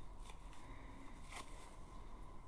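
Quiet room tone with two faint, short clicks about a second apart, small handling sounds close to the microphone.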